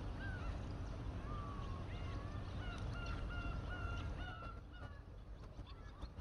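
A flock of birds calling: many short, repeated calls overlapping one another, fewer near the end, over a steady low rumble.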